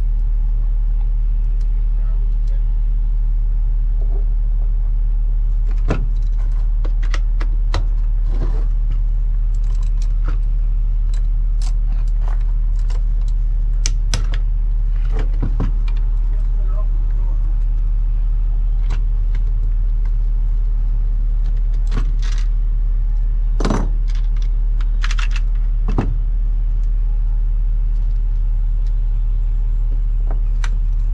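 Small metal breaker lug parts and a ratchet with a hex bit clinking and clicking as the lugs are unscrewed and lifted off a bolt-in breaker: scattered sharp metallic clinks over a loud, steady low rumble.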